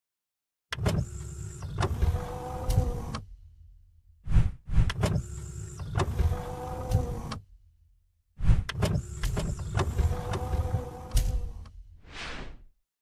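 Sound effects for an animated channel logo: three runs of mechanical-sounding effects, each about three seconds long and each opening with sharp clicks, separated by short gaps.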